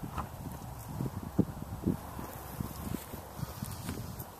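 Footsteps of a person walking on dry grass and dirt: dull, uneven thuds roughly every half second over a low steady rumble.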